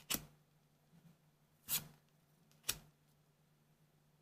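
Trading cards being handled: three short, crisp slides of card against card as they are pulled from the stack, one at the start, one a little past the middle and one about three quarters in, over a faint low hum.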